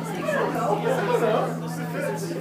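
Indistinct crowd chatter, with one low note from an amplified instrument ringing on steadily underneath.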